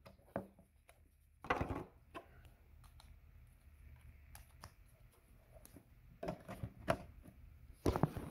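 Scattered plastic clicks and knocks of handling: a charger plug being pulled from a plug-in power meter and the next one plugged in. There is a cluster of knocks about a second and a half in, faint ticks after it, and another cluster near the end.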